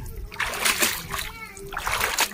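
A bare foot kicking through swimming-pool water, making two splashes: one about half a second in and one near the end.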